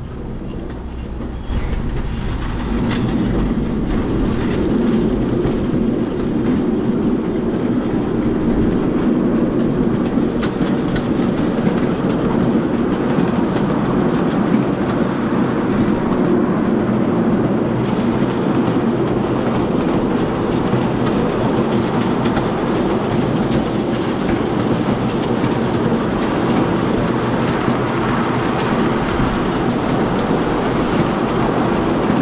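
Solar-powered electric miniature railway train running along its narrow-gauge track: a steady rumble of wheels on the rails, louder from about a second and a half in and then even.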